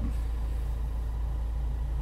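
Renault Captur's 1.5 dCi four-cylinder diesel engine idling steadily, heard from inside the cabin, just after being started with the push button.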